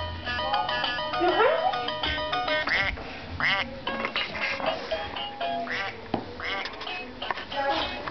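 Electronic melody from a baby play gym's musical toy panel, played in stepped, evenly held notes, with short quack-like calls between the notes. The notes are densest in the first three seconds and thin out after that.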